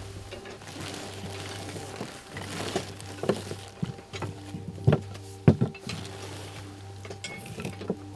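Background music with sustained tones over a low hum, with several irregular knocks and clatters of bones being set down on a work table, the loudest about five and a half seconds in.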